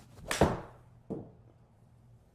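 Golf shot with a forged Srixon ZX7 iron hit off a mat: a loud, sharp strike of club on ball a little after the start, followed by a softer thud about a second in.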